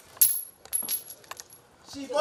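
A pair of red divination moon blocks (jiaobei) cast onto a concrete floor. They land with one sharp clack, then clatter with a few smaller knocks as they bounce and rock to rest.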